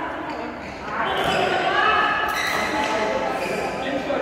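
Indistinct voices chattering in a large, echoing sports hall, with a single sharp hit about two seconds in.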